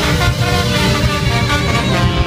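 Live ska band playing loudly. The horn section of trumpets and trombone holds notes over electric guitar and drums.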